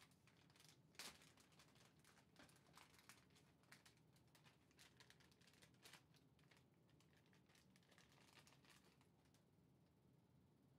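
Faint crinkling and clicking of plastic packaging being handled as a PCIe audio card is taken out of it, with the sharpest snap about a second in and the handling noise dying down after about seven seconds.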